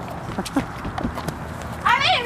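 Handling noise from a camcorder being grabbed and covered: scattered knocks and rustles, with a few short vocal sounds and a high-pitched voice that starts near the end.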